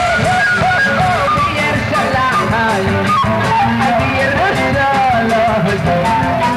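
Live band music with guitar and a man singing the melody over a steady beat.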